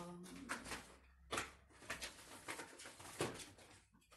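Scattered clicks, knocks and rustles of objects being handled and moved off-camera while someone searches for a product, with the sharpest knocks about a second and a half in and again near the three-second mark.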